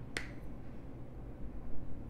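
A single sharp click just after the start, over a steady low hum, with a dull low bump near the end.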